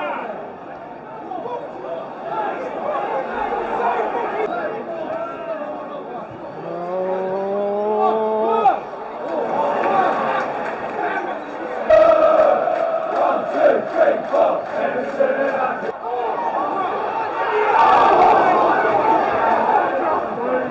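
Football stadium crowd noise from the home fans, with one man's long rising shout about seven seconds in that breaks off suddenly, then the crowd's noise swelling sharply around twelve seconds in and again near the end as City attack the goal.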